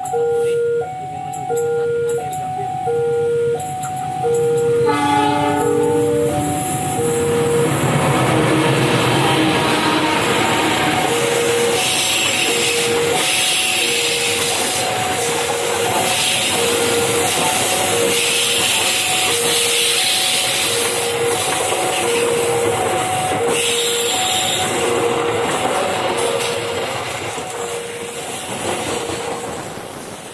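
A level-crossing warning bell dings in a steady two-note pattern about once a second throughout. About five seconds in, the approaching train's CC 206 diesel-electric locomotive briefly sounds its horn. The Argo Bromo Anggrek's stainless-steel passenger coaches then roll past close by, with loud wheel-on-rail noise.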